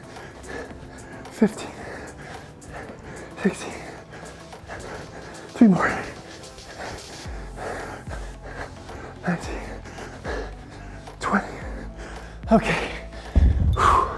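A man's short, falling-pitched grunts or exhales, one with each kettlebell swing, about every two seconds over background music. Near the end a low thud as the kettlebell is set down on the floor.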